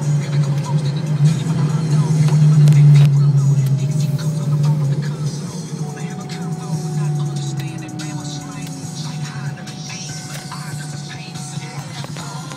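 Inside a Ford Mustang's cabin while driving: the engine's steady low drone builds to its loudest about three seconds in, then eases off. A whine falls in pitch over several seconds.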